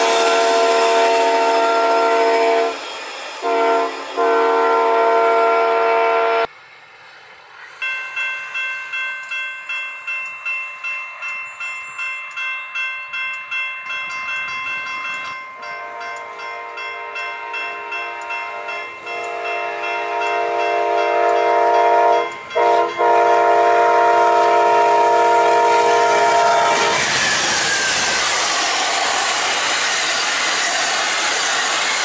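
Diesel passenger locomotive's multi-chime air horn sounding as double-deck Superliner passenger cars roll past. After a cut, a railroad crossing warning bell rings about twice a second while the approaching train sounds its horn in long blasts, and near the end the train rushes through the crossing with steady wheel and car noise.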